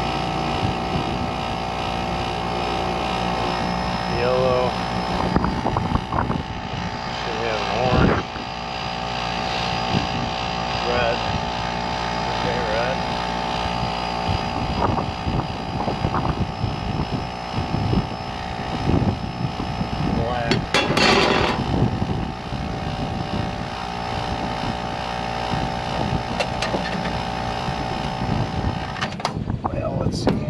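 Liebert rooftop condenser unit giving a steady electrical hum with a high whining tone, which cuts off about a second before the end, over gusty wind noise on the microphone.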